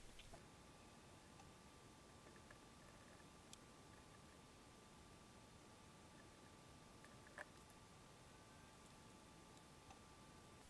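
Near silence: faint room tone with a faint steady tone and two small clicks.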